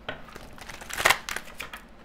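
A deck of oracle cards being shuffled by hand: a quick run of card flicks and slaps that is densest about halfway through.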